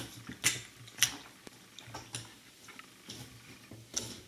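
Thick slimy gunge dripping and smacking on sneakers: irregular short wet clicks and squelches, about five or six in four seconds.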